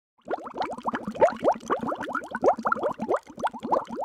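Underwater bubbling: a quick, uneven stream of bubbles, each a short rising blip, several a second.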